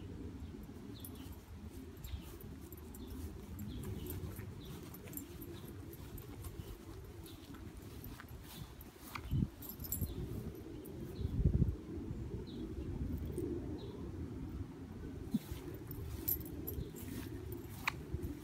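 Outdoor yard sound with a steady low rumble of wind and phone handling, light clinking of a dog's collar tags as the leashed dog sniffs around, and faint short bird chirps repeating in the background. Two duller thumps come about halfway through.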